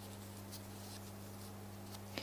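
Faint handling sounds at a lectern, a light rustle with a few soft clicks, over a steady low electrical hum.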